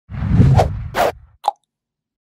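Edited intro sound effects: a low swell with sharp hits about half a second and a second in, ending in a short pop about one and a half seconds in.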